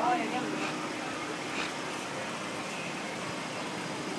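Steady hum of car traffic in a parking lot, with a brief voice at the very start.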